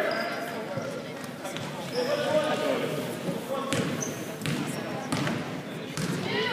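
Basketball bouncing on a hardwood gym floor, a few separate thuds with the echo of a large hall, under spectators' voices and a few brief sneaker squeaks.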